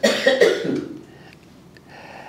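A man coughing: a sudden cough at the start, lasting under a second.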